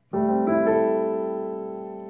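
Piano voice of a digital keyboard: a sustained D7(9)sus4 chord, right hand G, A, C, E and A over D in the left hand, struck just after the start, with more notes joining about half a second in, then held and slowly fading.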